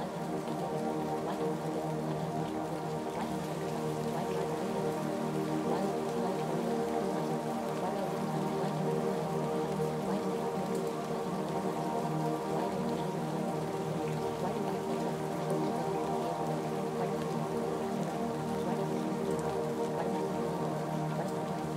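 Ambient music of held, overlapping tones layered over a steady rain sound, unchanging.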